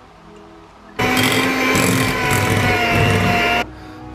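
Electric mixer beating cake batter, running with a steady whine for about two and a half seconds. It starts abruptly about a second in and cuts off shortly before the end, over faint background music.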